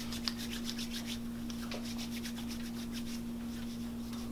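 Hands rubbing together with alcohol-based hand rub: a rapid run of dry swishing strokes that thins out about halfway through.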